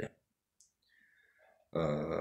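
A man's voice finishing a word, then a pause with a few faint clicks, then a held, steady vocal sound from the same voice starting near the end.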